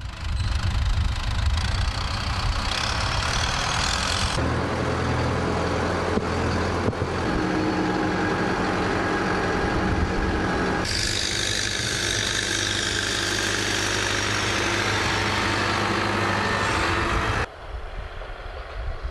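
Farm tractor's diesel engine running steadily while it pulls a livestock trailer loaded with cattle. The sound changes abruptly twice, about four seconds in and again about eleven seconds in, and drops away shortly before the end.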